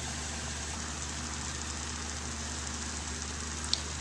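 Onion, tomato and spice masala frying in oil in a kadai, giving a steady, even sizzle, with one small click near the end.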